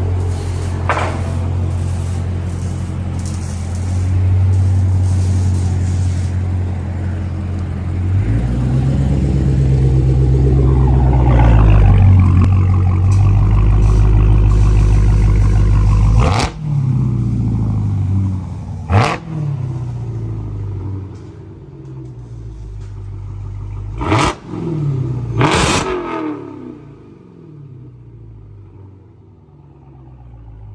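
Supercharged 6.2-litre Hemi V8 of a 2023 Dodge Charger SRT Hellcat Redeye Jailbreak, straight-piped with its mid and rear mufflers deleted, running loud at idle with the revs rising for a few seconds partway through. In the second half it is blipped four times, each rev rising sharply and falling back, the last two close together.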